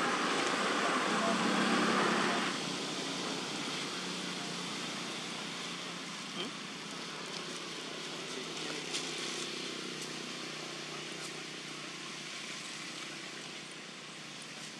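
Outdoor background noise, louder for the first two and a half seconds and then dropping suddenly, with a faint low steady hum underneath and a few faint clicks later on.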